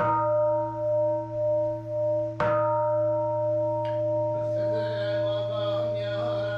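A Buddhist temple bowl bell ringing, its tone pulsing slowly as it sustains; about two and a half seconds in it is struck again and rings on.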